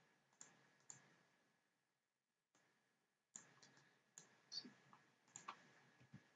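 Faint computer mouse clicks, about half a dozen single clicks scattered a second or so apart, against near silence.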